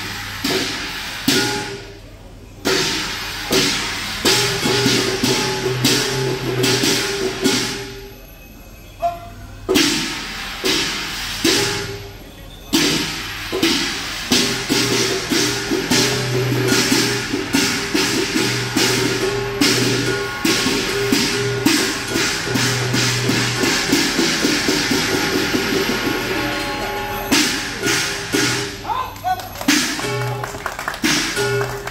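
A Chinese drum, gong and cymbal ensemble playing the beat for a qilin dance. The strikes come in phrases with short breaks, then quicken into a dense, rapid run from about halfway through, easing off near the end.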